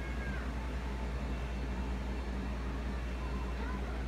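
A steady low hum, with a few faint short high calls at the start and near the end.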